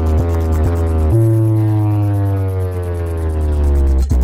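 Bass-heavy electronic track played loud through a large DJ sound-box speaker stack: deep bass notes pulse about twice a second, then about a second in one long deep bass note slowly falls in pitch.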